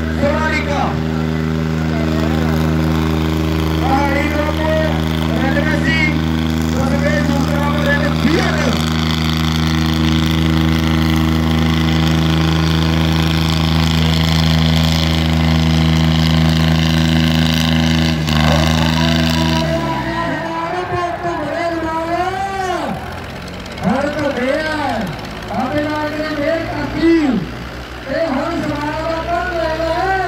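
Tractor diesel engines pulling hard under load, a steady drone that drops in pitch about two-thirds of the way through as the engine eases off. A man's voice shouts over it, rising and falling, and is the loudest thing after the engine drops.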